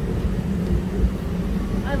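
Steady low rumble and hum of a galleon-shaped amusement ride car travelling along its track.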